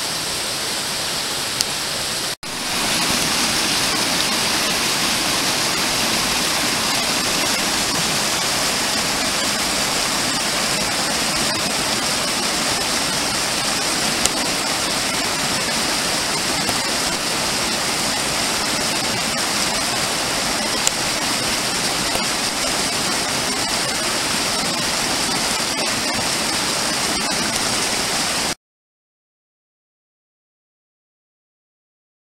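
Mountain stream running and splashing over rocks, a steady rush of water. It breaks off for an instant about two seconds in, then runs on slightly louder until it cuts off suddenly near the end.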